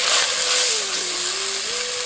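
Wet tomato paste sizzling in hot oil in a frying pan: a steady hiss, loudest in the first second and settling a little after.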